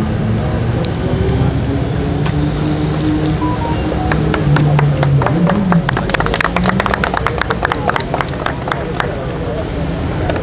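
Many camera shutters clicking in rapid bursts, densest from about four seconds in until near the end, over people's voices.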